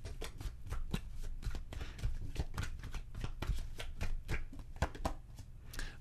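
A tarot deck being shuffled by hand: a quick, irregular run of card flicks and soft taps.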